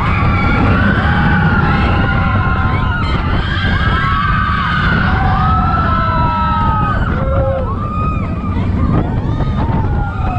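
Riders screaming and whooping on a mine-train roller coaster, several voices in long held, gliding cries, over the rumble of the moving cars and wind on the microphone.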